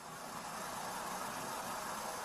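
Faint, steady background noise at a roadside stop, with a car engine idling: an even hiss with no distinct events.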